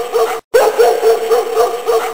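A dog barking in a rapid string of short yaps, about five a second. The same short barking clip cuts out briefly about half a second in and plays again.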